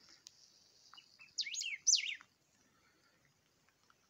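A bird calling twice in quick succession about a second and a half in, each call a short, high, downward-sweeping note.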